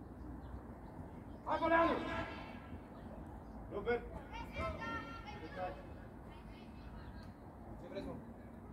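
Voices shouting across a football pitch: one loud call with a falling end about a second and a half in, then a run of shorter shouts around four to five and a half seconds in, over steady outdoor background noise.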